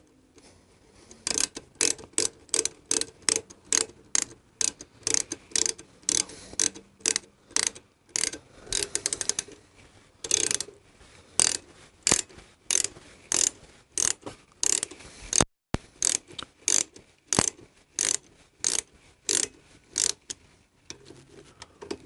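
Hand ratchet clicking over and over as the Harley Dyna's rear brake caliper pad pin is wound in, in short runs of rapid clicks with brief pauses between strokes. It takes many strokes because the pin is a long one.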